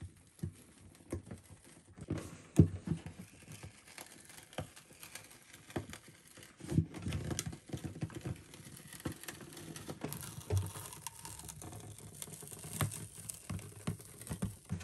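An old plastic pickguard being prised and peeled off the top of a Gibson J-45 acoustic guitar with a thin blade: irregular small clicks, scratches and crackles as the stiff plastic flexes and the old adhesive slowly lets go. The pickguard is stuck fast and hard to remove.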